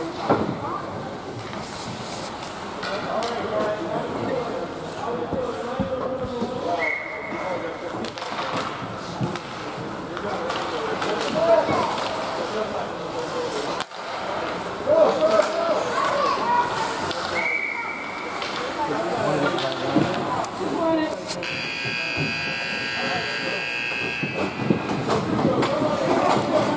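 Indistinct voices of spectators and players at an ice rink. About 21 seconds in, the rink's scoreboard buzzer sounds steadily through to the end, marking the end of the period.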